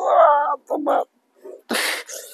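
A man moaning and whimpering in pain under a reflexology massage, two short pitched cries, then a sharp hissing breath near the end: pressure on his stiff, cramping leg muscles is hurting.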